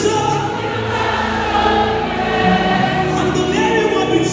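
Live gospel song: several voices singing together in sustained, held notes over band accompaniment.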